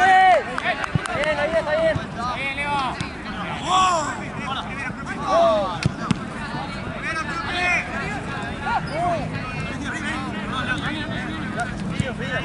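Players and onlookers shouting short, wordless calls over crowd chatter during a football match, with a few sharp knocks of the ball being kicked.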